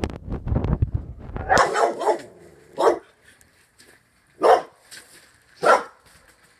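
A dog barking in short separate barks, about four or five of them, the last two loudest, after a low rumbling noise in the first second and a half.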